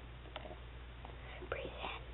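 A faint whisper near the end over quiet room tone with a low steady hum, and a small click about a third of a second in.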